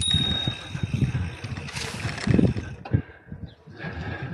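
A bicycle bell rung once, a clear high ding that fades within about half a second, warning others on a shared path that a cyclist is coming. Behind it, wind rush and tyre noise from the bike rolling along the path.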